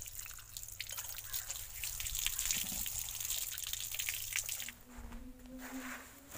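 Water running from a wall tap and splashing onto a concrete floor as hands are rinsed under the stream, with small irregular spatters. It stops abruptly about five seconds in.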